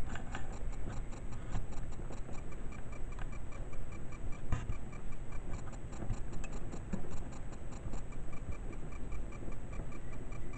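Fast, even ticking, several ticks a second, over a low rough rumble, with one louder click about four and a half seconds in.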